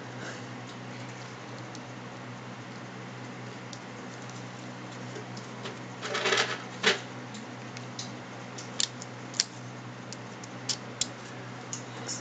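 Hard plastic bike tail light and its broken quick-release clamp being handled, with scattered small clicks and a brief rub about six seconds in, over a steady low hum.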